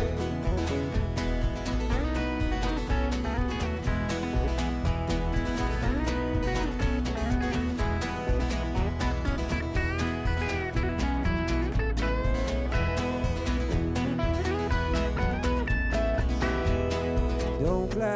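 A live rock band plays an instrumental break with no singing: a strummed acoustic guitar and an electric guitar over bass and drums, with a steady beat and some melodic lines that slide between notes.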